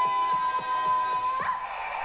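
A woman's voice holding one long high sung note, which rises briefly and breaks off about a second and a half in: the closing note of the flamenco-pop song, heard from the reaction's playback. Faint light ticks sound beneath it.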